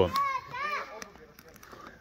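Children's high voices calling out during the first second, then fading to a quieter stretch.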